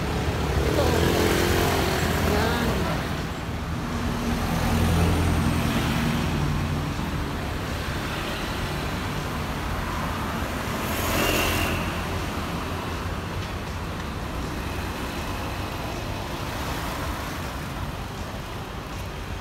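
City road traffic: cars and motorbikes passing, a steady engine rumble with louder swells as vehicles go by, the loudest about eleven seconds in.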